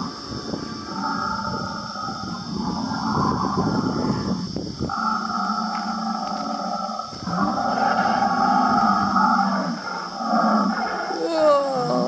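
Recorded dinosaur growls and roars played through an animatronic dinosaur display's loudspeaker. A rough, low growl runs for about five seconds, then several long, drawn-out roars follow.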